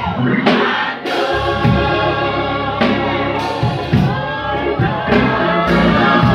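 Gospel singing with voices carried over a live band, with bass and drum beats underneath.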